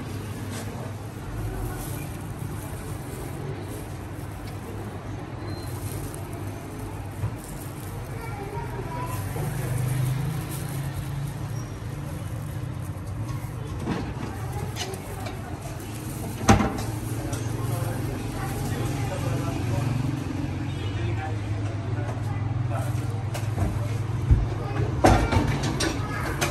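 Busy shop background: a steady low rumble under indistinct voices, with a few sharp clicks, the loudest about sixteen seconds in and several more near the end.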